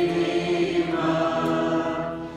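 Mixed youth choir singing a Romanian hymn in long held notes, the phrase ending just at the close.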